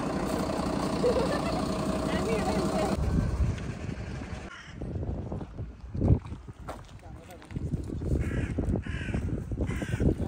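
A parked fire truck's engine idling steadily for about three seconds, then quieter open air with a single thump about six seconds in. Crows caw two or three times near the end.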